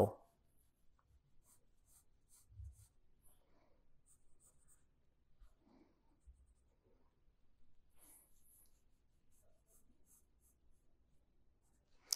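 Graphite pencil drawing on paper: faint, intermittent scratchy strokes as the lines of a sketch are darkened.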